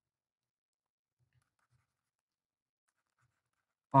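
Near silence, with a few very faint taps of a stylus writing on a tablet about a second and a half in.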